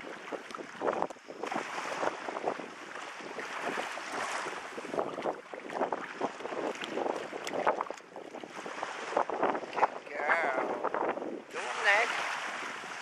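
Wind buffeting the microphone over small waves lapping in shallow sea water, in uneven gusts.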